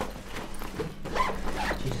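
A fabric bag being packed in a hurry: quick rustling and scraping of cloth, with a zip being worked.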